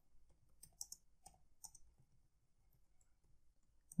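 Faint keystrokes on a computer keyboard: a scattered handful of soft clicks over the first two seconds.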